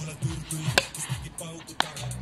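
Hip hop backing music with a deep, repeating bass line, and two sharp knocks, about a second in and near the end.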